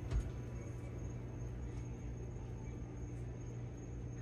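Steady low hum of background noise, with one soft bump just after the start.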